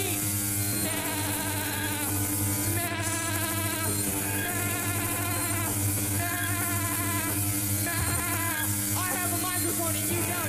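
Live rock band playing: a steady low drone underneath wavering, sliding higher notes.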